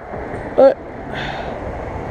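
A vehicle passing on a nearby road: a steady tyre and engine rumble with a low hum that builds about a second in.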